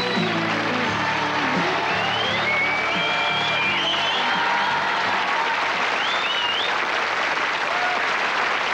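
Studio audience applauding as a pop song ends, its last held notes fading in the first second or so. A few high sliding tones sound over the clapping.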